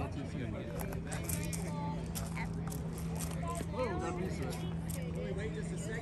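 Faint, indistinct chatter of people's voices around a ballfield, over a steady low hum.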